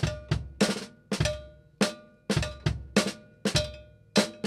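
Acoustic drum kit played in an improvised solo: sharp drum strikes in short, uneven groups of two or three, with the drum heads left to ring out briefly between groups.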